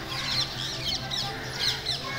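Birds chirping in quick succession, many short high calls, over a steady low hum.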